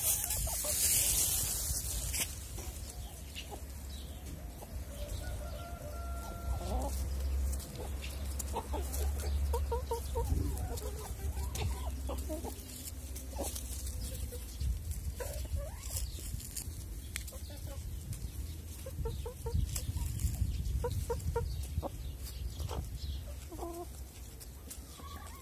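A flock of hens clucking as they forage, with short calls coming in clusters every few seconds.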